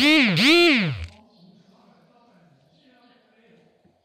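A person's voice: two loud calls about half a second each, each rising and then falling in pitch, within the first second; faint murmur follows.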